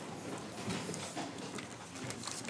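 An audience sitting back down on rows of chairs: scattered, irregular knocks and scrapes from the chairs, with shuffling feet.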